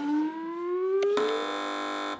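A siren-like sound effect: a tone gliding slowly upward, joined about a second in by a loud, steady tone rich in overtones that cuts off suddenly.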